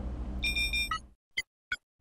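A short electronic chime sound effect: a bright, high ding of several clear tones about half a second in, lasting about half a second, then two quick ticks.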